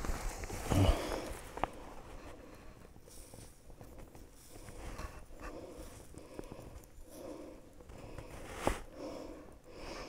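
Small hand trowel scraping and scooping sandy soil in soft, irregular strokes, with a louder scrape about a second in and a sharper knock near the end.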